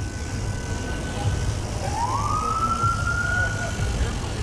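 Emergency-vehicle siren in traffic. A high held tone dies away about a second in, then the siren winds up again in a smooth rising wail and holds its top pitch, over a steady low rumble of road noise and wind.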